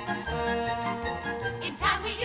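Broadway show orchestra playing an instrumental passage: held notes over a repeating bass line, with a louder accented hit near the end.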